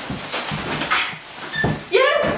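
A woman laughing breathlessly in a few short, gasping bursts, with a voiced cry of laughter starting at the very end.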